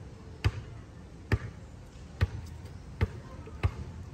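A series of sharp, heavy thuds, five of them a little under a second apart, over a steady low background.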